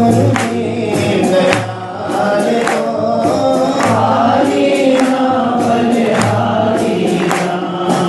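Hindi devotional bhajan: voices singing a melody over a steady low drone, with percussion striking every half second or so.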